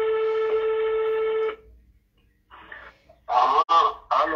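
Smartphone's call tone heard through its loudspeaker: one steady tone lasting about a second and a half, typical of a ringback tone while a call goes through. It is followed near the end by a short burst of voice.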